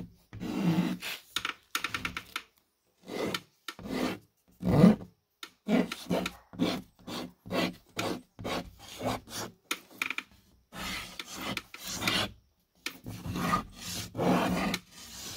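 A chalky piece drawn across the paper face of a sheet of drywall, writing letters in many short, scratchy strokes with brief pauses between them.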